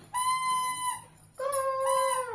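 Two drawn-out, high-pitched howling calls: a first held note, then a lower one that slides downward as it ends.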